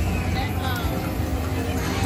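Casino floor ambience: a Fire Link slot machine spinning its reels and stopping, with its electronic game sounds, over background chatter and a steady low hum.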